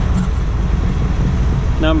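Wind buffeting the microphone: a loud, steady low rumble, with a man's voice starting a word near the end.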